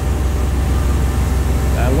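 CNC lathe running with a steady low hum while its sub-spindle moves in slowly to take the part off the main spindle.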